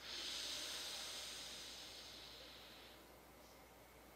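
A long breath through one nostril during alternate-nostril pranayama breathing: an airy hiss that starts suddenly and fades slowly over about three seconds.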